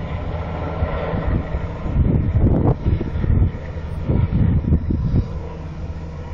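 Helicopter circling overhead, a steady low drone of its rotors and engines. Wind buffets the microphone in gusts between about two and five seconds in.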